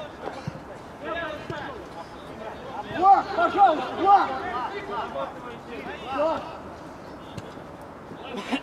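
Men's voices shouting and calling out across a football pitch, with a run of short loud calls about three seconds in and another call about six seconds in, over faint background chatter.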